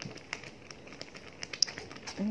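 Thick soursop jam cooking in a pan: faint scattered pops and clicks from the bubbling jam and a metal spoon in the pan, one sharper click near the end.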